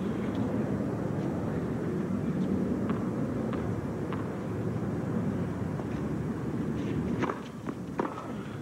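A tennis ball is bounced lightly a few times on a hard court before a serve, then there are two or three sharp racket hits near the end as the serve and the return are struck. A steady low background murmur of the stadium runs underneath.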